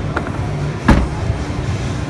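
Steady murmur and low hum of a busy exhibition hall, with one sharp knock a little under a second in.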